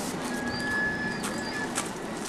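Small-gauge railway wagons rolling slowly on the track under a hand push, with a few clicks of the wheels over rail joints. A steady high-pitched wheel squeal lasts about a second and a half, starting a moment in.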